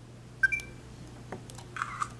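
A Kodak EasyShare Z5010 digital camera gives a short electronic beep with a click about half a second in, followed by a couple of faint clicks from the camera being handled.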